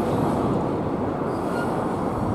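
Empty Koki container flatcars at the tail of a freight train rolling along the track: a steady noise of steel wheels on rail.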